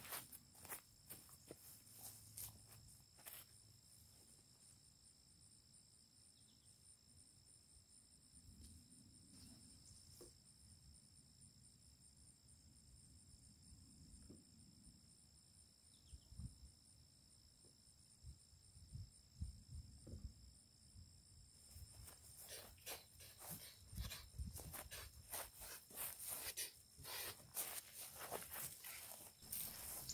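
Near silence: a faint, steady high-pitched insect chorus, with soft footsteps on grass and dirt coming in about halfway through and growing more frequent near the end.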